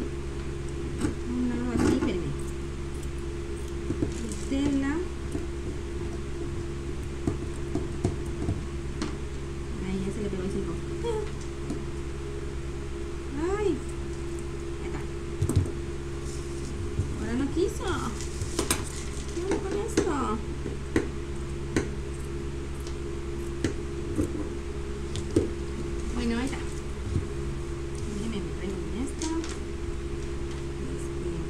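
Steady hum of an electric fan, with scattered clicks and knocks of scissors and fabric being handled on a wooden table.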